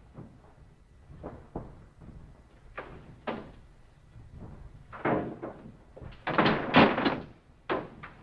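Car door of an old wood-bodied station wagon being worked as someone climbs in: a few light knocks, then a louder cluster of clunks and rattles in the second half as the door is shut.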